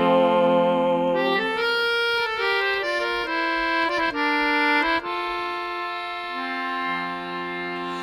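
Instrumental break played on a free-reed squeezebox: a held chord, then a slow melody of sustained notes over a steady bass, settling on a long held note near the end.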